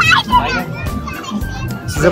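Children's high voices and chatter in a busy crowd, with background music playing underneath.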